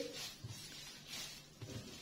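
Hands kneading soft yeast dough with butter worked into it on a granite countertop: faint squishing, with a couple of dull knocks as the dough is pressed down, about half a second in and again near the end.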